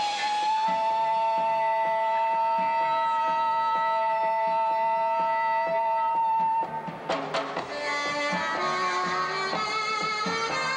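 Live band music: a saxophone holds one long note for about six and a half seconds over a steady bass-and-drums pulse, then breaks off and moves into a run of shorter notes.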